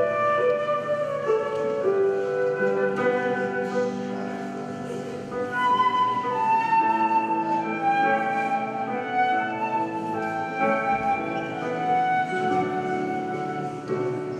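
Live chamber trio of flute, violin and electric keyboard playing a melody, with the flute carrying the tune over keyboard chords. The line steps gently downward about halfway through.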